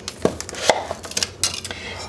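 Kitchen utensils knocking and clinking on a glass mixing bowl and a granite countertop as a measuring spoon and salt canister are set down and a Danish whisk is taken up to stir dry ingredients; a handful of separate sharp taps.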